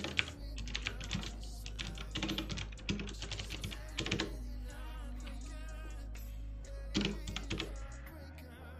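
Computer keyboard typing: a quick run of key clicks through the first half, then a short burst of keystrokes near the end, over a steady low hum.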